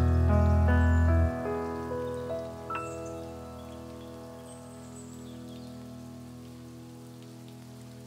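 Piano closing a lo-fi arrangement: notes climbing one after another into a final held E major chord that slowly fades away. A soft, even rain-like hiss runs underneath.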